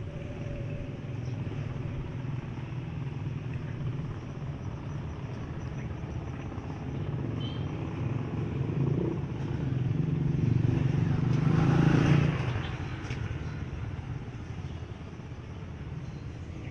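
Electric hair clippers buzzing steadily as they cut the short hair at the nape for a taper fade. A louder rumble swells and fades about two-thirds of the way through.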